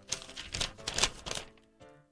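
A quick, irregular run of clicks and taps lasting about a second and a half, then a brief faint hum near the end.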